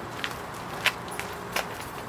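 Footsteps on pavement: three sharp steps about two-thirds of a second apart, over a low steady outdoor background.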